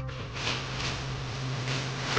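Steady background noise with a low steady hum underneath, no voices, in a pause between speech clips.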